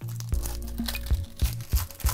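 Foil wrapper of a 2019 Panini Chronicles Baseball card pack crinkling as it is pulled open by hand, over background music with a steady beat.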